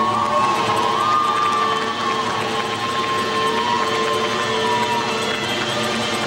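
Spectators in a pool hall cheering loudly and steadily, with one long high note held over the cheering.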